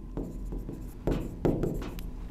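Marker pen writing on a whiteboard: a series of short, faint scratching strokes as words are written out by hand.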